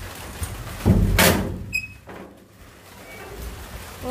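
Sliding barrel bolt on a sheet-metal door drawn back and the door pushed open, making one loud clatter about a second in, followed by a brief metallic ring.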